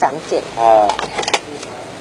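A man speaking in Thai, with a couple of brief clicks about a second and a half in.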